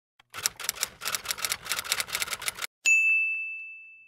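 Typewriter sound effect: a rapid run of key strikes lasting about two seconds, then a single bright bell ding that rings out and fades over about a second.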